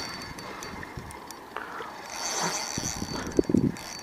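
Spinning reel being cranked against a hooked carp, giving light clicking and ticking as the line comes in, with a short low sound about three and a half seconds in.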